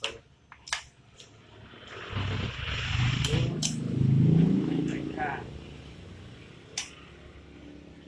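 Sharp metal clicks and clinks from pliers and an aluminium fibre optic cable clamp being worked by hand. A low rumble swells in the middle and fades out.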